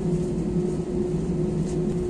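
Steady drone inside a jet airliner's cabin on the ground, a constant single-pitched hum over a low rumble.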